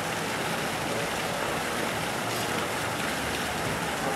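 Steady rushing of water, an even hiss with no distinct splashes.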